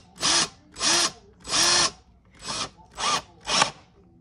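Cordless drill run in about six short trigger pulls, the motor spinning up and winding down each time, driving a screw into furniture wood.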